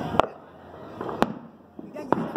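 Two sharp bangs about a second apart, from the New Year's Eve barrage of firecrackers and celebratory gunshots going off across the city.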